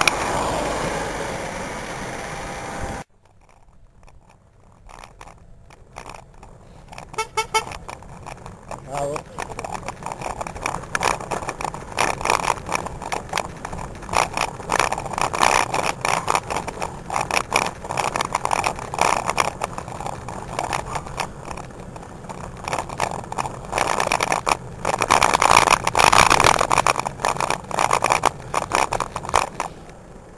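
Wind rushing over the microphone of a camera mounted on a moving road bike. It is a loud steady rush at first, then after a sudden drop it turns into uneven, gusty buffeting that swells and fades.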